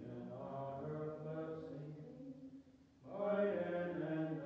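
A man's voice singing a slow chant-like hymn in long held notes, with a short breath pause about three seconds in before the next phrase begins.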